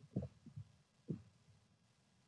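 Mostly quiet room tone with a few faint, short, low thumps and a soft muffled 'uh', the first just after the start and the last about a second in.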